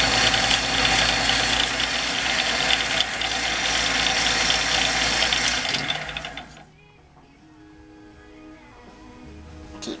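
Electric disc sander running with a wooden pen blank pressed against its abrasive disc: a steady motor hum under a scratchy sanding noise, as the blank's end is ground flush with its brass tube. The noise drops away about six and a half seconds in, leaving only a faint hum.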